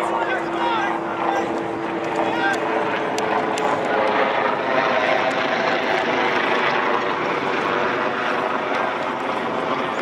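Steady drone of a propeller aircraft's engine, holding one even pitch.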